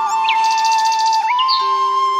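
Flute background music: one long held flute note over a steady drone, stepping up slightly past halfway, with bird chirps and a quick bird trill mixed in.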